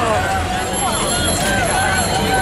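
Crowd of cyclists talking and calling out over each other, many voices at once, over a steady low street rumble.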